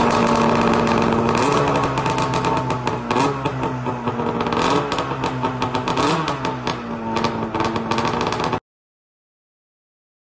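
2012 Arctic Cat ZR 600 Sno Pro's two-stroke engine with a custom race can exhaust, idling with short throttle blips about every second and a half, with a rattly clatter over it. It cuts off suddenly near the end.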